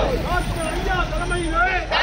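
A crowd of protesters shouting slogans, raised voices overlapping, over a steady low rumble.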